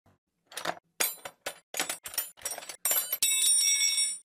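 Intro sound effect: a run of sharp metallic clinks that come closer and closer together, then a bright sustained metallic ringing from about three seconds in.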